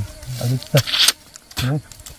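A man's low voice saying a few short words in separate bursts, with a brief hiss about a second in.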